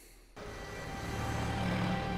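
A war drama's soundtrack comes in about a third of a second in: steady, held music over a low vehicle engine rumble, slowly getting louder.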